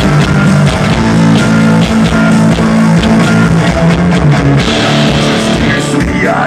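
A live rock band playing loud guitar and bass over a driving drum beat, in an instrumental passage without vocals. A hissing cymbal wash comes in near the end.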